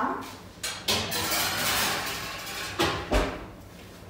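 Kitchen handling sounds: a few knocks, then about two seconds of rushing, scraping noise, then more knocks and a low thump.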